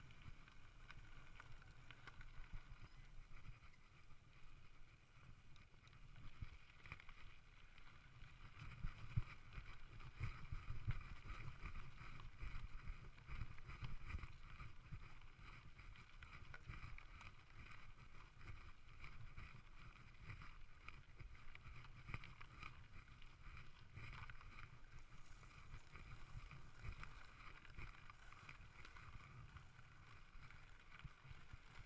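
Mountain bike rolling fast down a rough dirt and stone trail: a continuous muffled rumble of tyres over loose ground with quick jolts from rocks and bumps, heaviest in the middle stretch. A faint steady high hum runs underneath.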